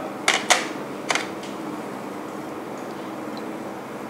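Three sharp metallic clinks within the first second or so, as small aluminium jelly moulds and a spoon knock against an aluminium tray, over a steady low background hum.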